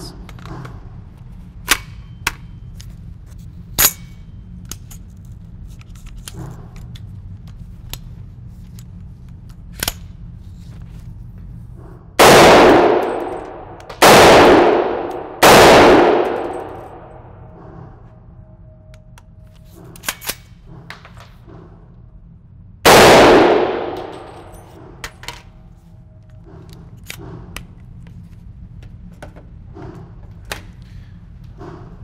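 AR-15 pistol chambered in .300 Blackout firing four loud shots in an indoor range, each with a long echoing tail: three about a second and a half apart, then a fourth some seven seconds later. Light metallic clicks of handling the rifle come before the shots, and small clinks come after them.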